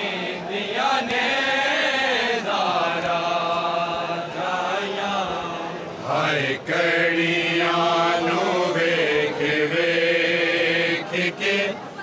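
A group of men chanting a noha, a Shia mourning lament, unaccompanied, in long held notes with a short break about six and a half seconds in.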